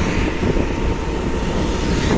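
Steady wind rush buffeting the microphone on a moving motor two-wheeler, with a low rumble of the ride underneath.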